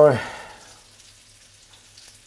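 Faint, steady sizzling of fish cakes frying in oil in a pan, after a spoken word cuts off at the very start.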